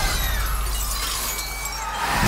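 Window glass shattering, with a shower of shards tinkling and clattering down that slowly thins out, over a steady low drone.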